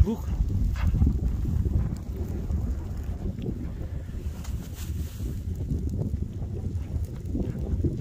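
Wind buffeting the phone's microphone: an uneven low rumble that fluctuates in level throughout.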